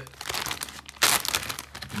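Clear plastic zipper bag crinkling as it is handled, with a louder rustle about a second in.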